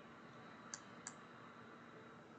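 Near silence with two faint, short clicks a third of a second apart near the middle: a stylus tapping on a tablet screen while handwriting onto a slide.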